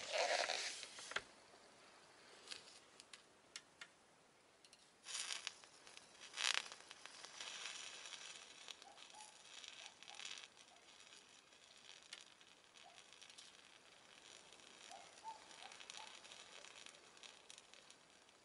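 Faint, irregular crackling and sizzling from a Sony CRT television's flyback transformer as it burns and smokes: the sign of the flyback failing inside. Short sharper bursts come near the start and twice around five to six seconds in, then a softer crackle continues on and off.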